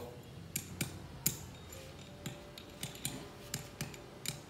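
Light, irregular metallic clicks and clinks of steel swing-motor parts being handled, about a dozen over the few seconds.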